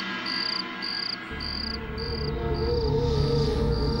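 Crickets chirping in an even rhythm, a short high chirp a little under once a second, over dramatic background music: a low drone comes in about a second in and a wavering tone joins midway.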